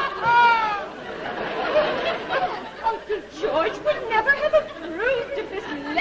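A woman's high-pitched giggling in the first second, then overlapping voices and laughter.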